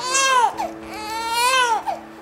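Newborn baby crying: two wails, a short one and then a longer one of about a second, each rising and falling in pitch.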